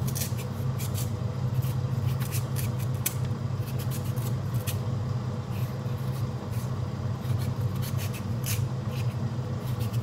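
Kitchen knife peeling a sweet potato: short, sharp scraping strokes of the blade along the skin, coming irregularly several times a second, over a steady low hum.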